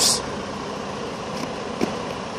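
Idling truck engine, a steady even hum, with a faint short sound near the end.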